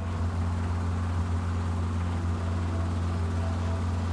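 Steady low drone of an aircraft in flight, heard from on board, with no change in pitch.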